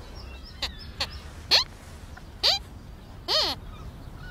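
Sweep's squeaky puppet voice: a run of five short, high squeaks about a second apart, each gliding sharply down in pitch, the last one dipping and rising again.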